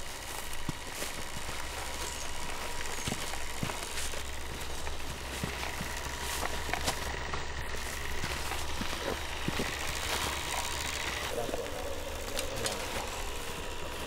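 Outdoor woodland ambience on location: a steady hiss with scattered light clicks and rustles over a low hum.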